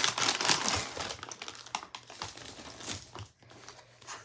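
A grab bag crinkling and rustling as it is opened and an item is pulled out. The sound is thickest in the first second, then thins to scattered light rustles and small clicks.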